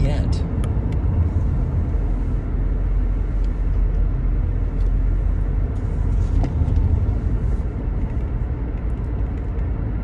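Steady low road and engine rumble of a moving car, heard from inside the cabin.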